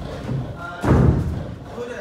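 A single heavy thud on a boxing ring's canvas floor about a second in, a boxer's feet landing after a jump.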